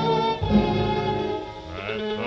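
Orchestral music with bowed strings and a violin carrying the melody. Near the end the accompaniment thins and a voice comes in, singing with a wide vibrato.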